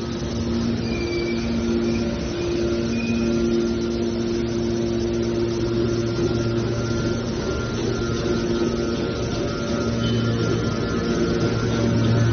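Hydraulic power unit of a scrap metal baler running with a steady machine hum and a few held low tones.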